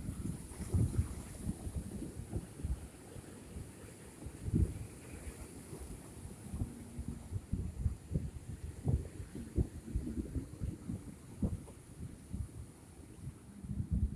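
Wind buffeting the microphone in uneven low gusts, over a fainter wash of surf breaking on jetty rocks.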